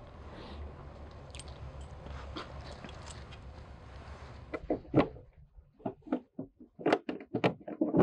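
A low rumble, then from about halfway a quick run of small clicks and knocks as a hand works the latch of a plastic access hatch on a motorhome's side.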